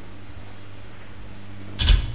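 Steady low electrical hum from a public-address system with the microphone open and no one speaking, then a short, loud thump on the microphone near the end.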